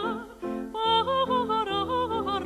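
Soprano singing a classical song with wide vibrato, accompanied by piano. The voice stops briefly about half a second in, then resumes.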